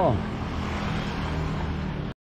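A steady, low engine hum from a motor running nearby, holding an even pitch for the whole stretch over general outdoor background noise.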